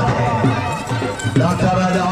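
A voice speaking or singing over music, loud and continuous.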